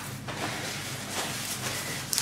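Faint rustling of a paper towel being handled, over a steady low hum.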